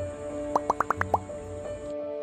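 Playful background music with a quick run of six or seven short rising 'bloop' notes, like a cartoon bubble-pop effect.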